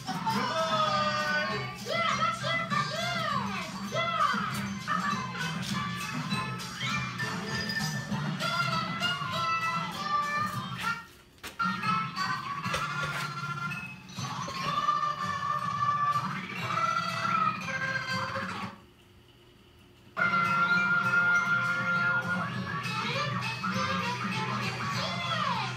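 Music with singing voices from a children's television programme. It drops out for about a second and a half near the end.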